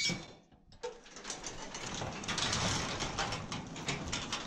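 Garage door hauled open by hand: after a brief quiet moment it rattles and clatters up its metal tracks for a few seconds.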